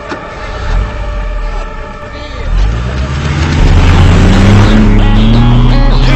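An engine revving up, its pitch slowly rising and the sound growing very loud about halfway through, over a steady droning backdrop of held tones.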